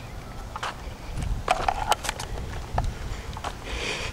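Footsteps of a person walking outdoors, with irregular knocks and bumps from a handheld camera being carried.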